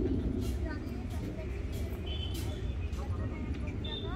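Outdoor background: a steady low rumble with faint, indistinct voices and a few light knocks.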